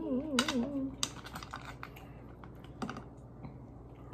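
A voice humming a wavering note through the first second, then small sharp clicks and cracks of cooked crab shell being broken and picked apart by hand over plates. There are a few close together about a second in and single ones near the three- and four-second marks.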